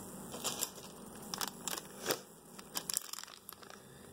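Plastic product packaging crinkling in a series of short, light bursts as it is handled: a wax-melt clamshell set down and a plastic gum pouch picked up.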